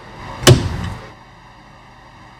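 Ford rear-view mirror mount snapping onto its windshield button as it is pressed home: one sharp click about half a second in with a brief ringing tail. The click is the sign that the mount has locked into place.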